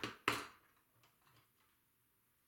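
Plastic glue bottle being handled and set down on the work table: two quick knocks about a third of a second apart, the second louder, then faint light handling sounds.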